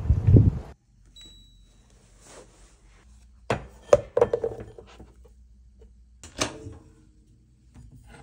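Loud wind rumble on the microphone that cuts off abruptly within the first second. Then, in a quiet room, a plastic lunchbox being handled on a kitchen counter: a few sharp clicks and knocks of plastic parts about three and a half to four and a half seconds in, and another knock about six and a half seconds in.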